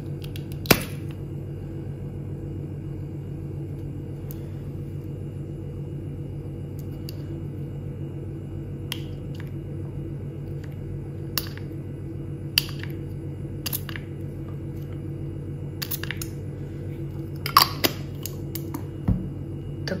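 Plastic pump dispenser on a bottle of facial essence being worked by hand, giving a scattering of sharp clicks, loudest about a second in and again near the end.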